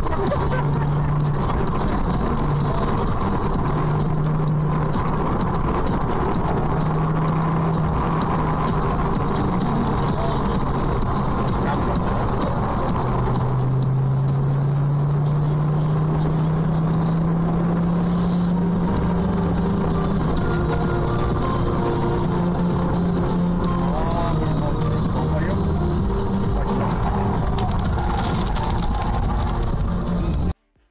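Car engine and road noise heard inside the cabin from a dashcam, with the engine note rising steadily for several seconds around the middle as the car accelerates.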